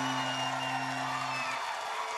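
A live rock band's final note rings out over a cheering crowd and stops about one and a half seconds in. The crowd's cheering and whistles carry on after it.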